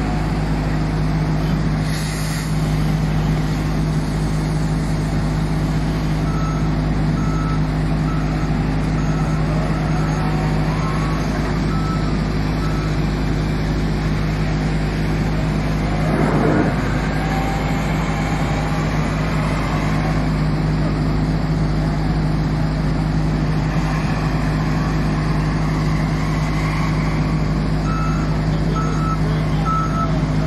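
Hitachi ZW310 wheel loader's diesel engine running steadily, with its reversing alarm beeping in two spells as it backs up. About two seconds in there is a short rush of gravel tipped from the bucket into a tipper trailer, and midway the engine note briefly rises and falls.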